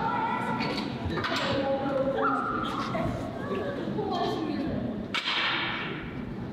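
Young women talking in Korean, with a brief noisy burst about five seconds in.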